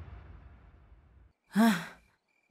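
Background music trails off into silence, then near the end a person makes one short sigh-like vocal sound, rising and then falling in pitch.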